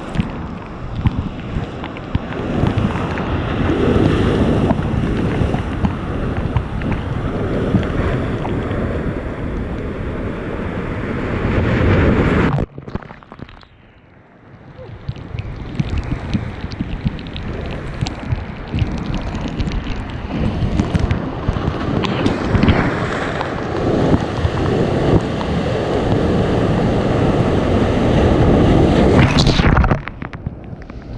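Ocean surf breaking and washing over rocks close by, with wind buffeting the microphone. The sound drops away suddenly about twelve and a half seconds in, builds back up over the next few seconds, and is loudest near the end as a wave splashes over the rocks.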